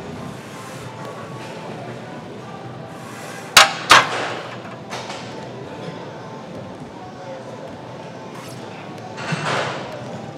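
Smith machine bar loaded with weight plates knocking twice during hip thrusts, two loud sharp clanks about a third of a second apart that ring briefly, over steady gym background music. A short rush of noise follows near the end.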